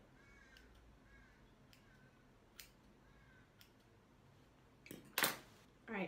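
Scissors cutting hair: a couple of small snips, then a louder, longer cut through a thick bunch of hair about five seconds in. A bird calls faintly in the background, short calls repeating about once a second.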